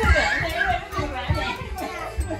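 A child's voice during lively play, with background music underneath.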